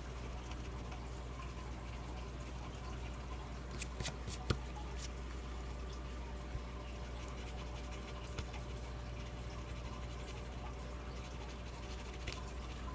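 Coin scraping the coating off a scratch-off lottery ticket, faint and steady, with a few light clicks about four seconds in, over a low hum.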